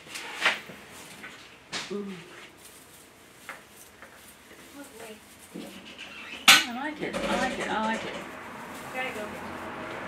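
Handling noise from wreath materials on a cluttered craft table: a few sharp clicks and knocks, the loudest about six and a half seconds in, mixed with short murmured vocal sounds.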